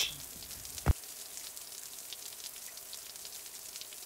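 Steady rain falling, a soft hiss full of fine drop ticks. A single short knock sounds about a second in.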